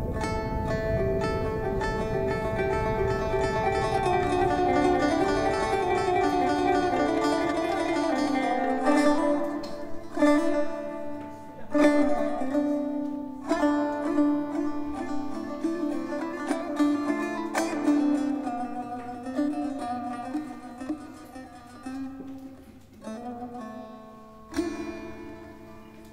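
Instrumental music on a plucked string instrument: held notes over a low rumble for the first several seconds, then single plucked notes that ring out and fade, growing quieter near the end.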